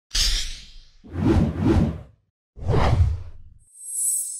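Logo-intro whooshes: a high swish at the start, a double whoosh, then a third, each fading away, followed near the end by a bright high shimmer as the logo appears.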